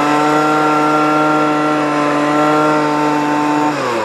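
A 2007 Ryobi handheld gas leaf blower's two-stroke engine is held at full throttle, running at a steady high pitch. Near the end the throttle is let off and the revs drop. It is running well on its new fuel lines, with old fuel still being cleared through the carburetor.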